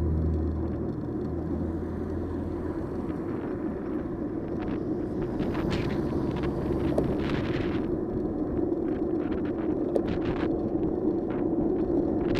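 Traffic and riding noise heard from a bicycle while cycling on a busy road: a nearby car's low engine hum fades away over the first couple of seconds, under a steady rumble of wind and road, with scattered light clicks and rattles.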